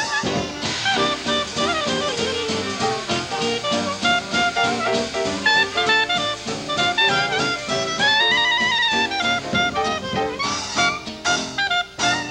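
Small traditional jazz band playing live: two clarinets over piano, guitar, string bass and drums. About eight seconds in, a held reed note bends up and back down, and the drums strike sharper accents near the end.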